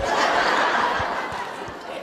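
Audience laughing together, a crowd's laughter that is loudest at first and fades away over the two seconds.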